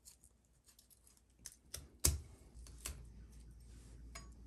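A few light clicks and taps of a knife and fingers on a wooden cutting board as deboned frog-leg meat and bones are pushed into piles. The loudest is a knock about two seconds in.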